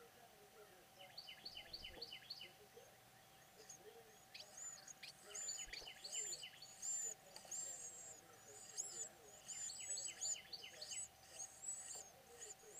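Nestling songbirds begging in the nest with thin, high chirps: a quick run of descending chirps about a second in, then from about four seconds on repeated high peeping calls that grow louder and busier in the second half.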